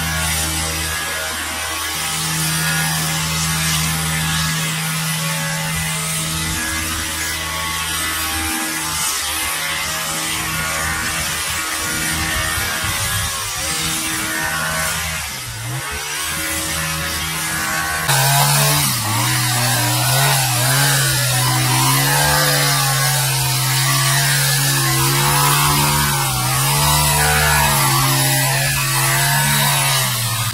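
Background music playing over the buzz of a gas hedge trimmer's two-stroke engine running. The music changes sharply about two-thirds of the way through.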